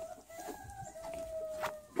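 A rooster crowing at a distance: a few short notes, then one long held note that falls slightly at the end.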